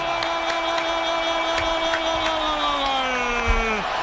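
A football commentator's drawn-out goal shout, one long 'gol' held on a single pitch for nearly four seconds and falling away just before the end, over a stadium crowd cheering.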